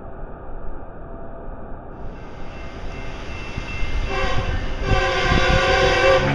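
A rumbling noise grows steadily louder, joined about four seconds in by a loud, horn-like chord of several steady tones.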